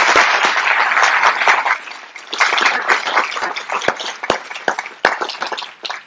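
Audience applauding, dense and loud at first, dipping briefly about two seconds in, then thinning to scattered claps toward the end.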